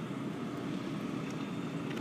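Steady outdoor background noise, an even low hiss with no distinct events.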